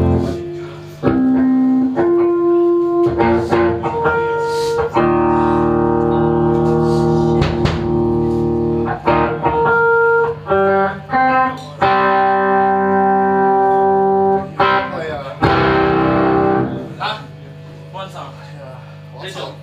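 Electric guitar through an amplifier, playing between songs: a run of held chords and single notes that ring out and change every second or so, with a few short muted stops between them.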